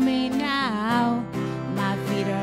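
Live worship song: acoustic guitar strumming under a singing voice, which holds a note and then bends it down and back up about half a second in.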